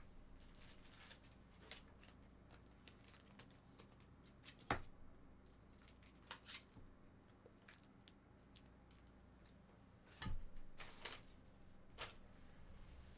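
Faint, scattered clicks and snips of hand work, one sharper click about halfway through and a short flurry near the end.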